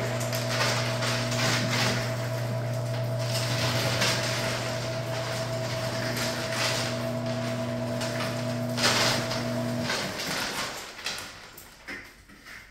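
Motorized raffle ticket drum turning: a steady motor hum under the rustle of paper tickets tumbling inside. The motor stops about ten seconds in and the sound dies away.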